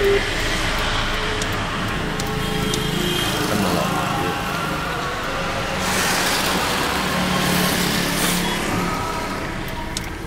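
Steady road and engine noise of a car being driven on a wet road, heard from inside the cabin. A louder hiss swells from about six seconds in and fades near eight and a half seconds.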